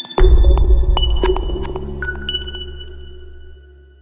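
Electronic intro jingle for a logo animation: a deep bass hit about a quarter second in that slowly fades away over about three seconds, with high ringing pings sounding over it and dying out before the end.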